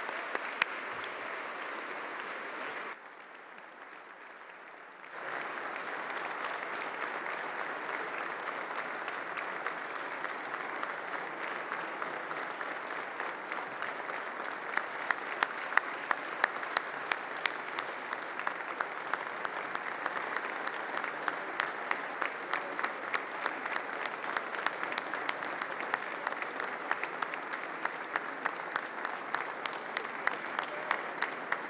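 A large crowd applauding steadily, briefly quieter about three seconds in, then with single sharp claps close by standing out, about two a second, from about halfway on.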